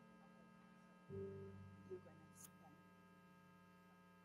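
Near silence with a steady electrical mains hum. A faint low murmur comes about a second in, and a short click a little after the middle.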